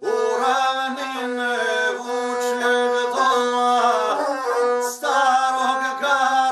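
Guslar singing an epic song in a bending, ornamented voice over the steady drone of his gusle, the bowed one-string folk fiddle, with a short breath about five seconds in.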